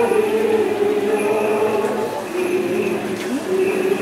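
A group of people singing a slow Greek Orthodox hymn together in procession, in long held notes.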